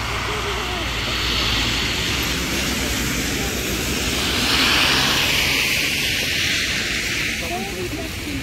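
Road traffic on a slushy, snow-covered road: a steady hiss of tyres, swelling as a vehicle passes about halfway through. Faint voices are heard near the start and end.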